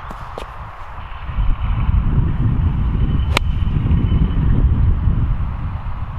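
Wind buffeting the microphone: a low rumble that swells about a second and a half in and stays strong. A single sharp click comes about halfway through.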